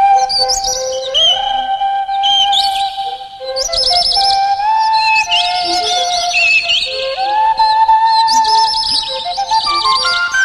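Cartoon score: a held flute-like melody that slides between notes, with short high warbling bird trills and chirps laid over it about once a second, voicing the cartoon bird's song.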